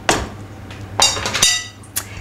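A spoon knocking and clinking against a risotto pan: a dull knock at the start, a loud ringing metallic clink about halfway through, and a short click near the end.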